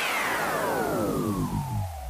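Edited-in intro sound effect: a dense cluster of tones sliding steadily downward in pitch together, a long falling sweep that starts suddenly and fades away low.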